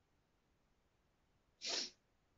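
Quiet for about a second and a half, then one short, sharp breath from a woman near the end.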